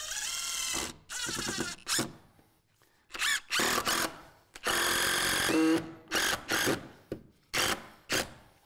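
Craftsman V20 cordless impact driver driving a screw into a door jamb, in a series of runs about a second long, each starting with a rising whine. Several short trigger pulses near the end set the screw.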